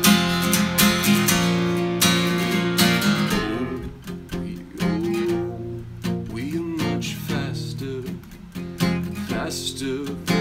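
Steel-string acoustic guitar with a capo, strummed steadily, then played more softly with lighter, sparser strums from about three and a half seconds in.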